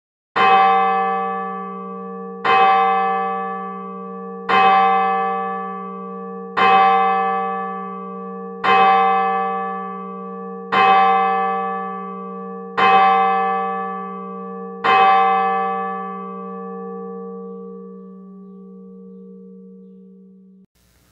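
A single church bell tolled eight times at the same pitch, a stroke about every two seconds, each one still ringing when the next comes. After the last stroke, a little past halfway, the bell rings out slowly to the end.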